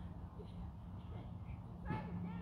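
Faint distant voices over a steady low rumble of wind on the microphone, with a single sharp thump just before the end.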